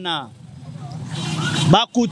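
Street traffic: a passing motor vehicle's engine and tyre noise growing louder over about a second and a half, between a man's shouted words at the start and near the end.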